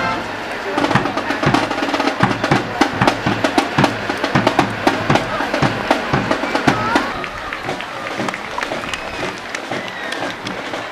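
Parade music with a steady drumbeat and people talking. The drumming thins out about seven seconds in, leaving voices and crowd noise.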